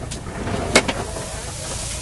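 Steady low rumble of belt-driven farm machinery and its tractor engine running, with a sharp click a little under a second in.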